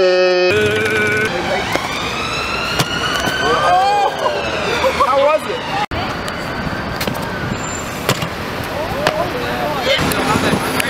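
Emergency-vehicle siren wailing over street traffic. Its pitch rises slowly and then falls once, over about four seconds, starting a couple of seconds in.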